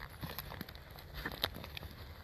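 Footsteps and a hound moving through grass: light rustling with a few scattered clicks over a low steady rumble.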